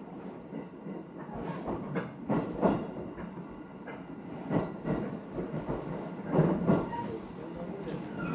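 Running noise heard inside a moving commuter train car: a steady rumble with the wheels clacking over rail joints every second or so.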